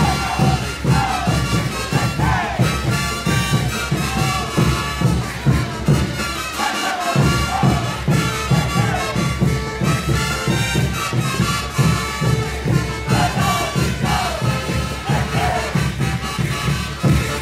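Brass band playing caporales music, brass over a steady bass-drum beat. The bass and drums drop out briefly about seven seconds in, then come back.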